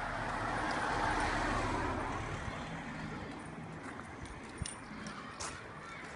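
A car passing on the road, its noise swelling over the first two seconds and then fading away, followed by a few footsteps clicking on the pavement.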